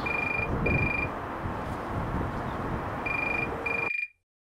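Phone ringing in a double-ring pattern: two short high beeps, a pause of about two seconds, then two more, over steady outdoor background noise. It cuts off abruptly just before the end.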